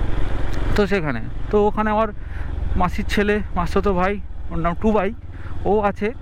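A man talking while riding, over the steady low running of a Yamaha motorcycle's engine and road noise.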